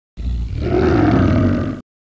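A tiger's roar, played as a logo sound effect: one roar lasting about a second and a half that cuts off abruptly.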